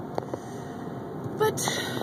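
Steady cabin noise of a car being driven: road and engine rumble heard from inside, with a few faint clicks.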